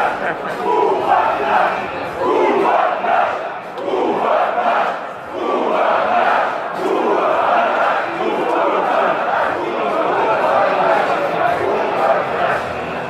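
Football stadium crowd chanting in swelling waves, heard through a television's speakers.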